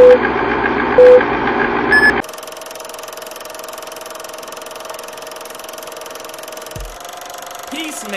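Segment-intro sound effect: a loud music bed with a short electronic beep about once a second, three low beeps and then a higher one about two seconds in. It then drops to a quieter steady hum with a held tone.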